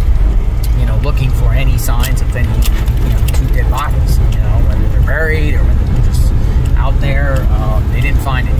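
Steady low rumble of road and engine noise inside a moving car's cabin, with a voice talking over it at intervals.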